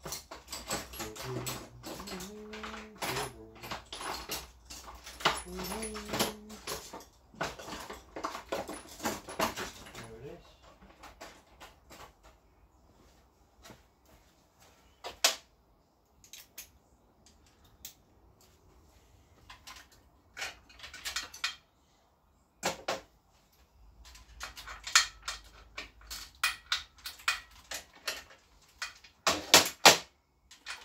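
Small metal parts and hand tools clicking, tapping and clinking on a metal workbench while parts are fitted to a moped frame, at times sparse and at times in quick clusters. The busiest clinking comes near the end. Over the first ten seconds a wavering, whining voice-like sound runs under the clicks.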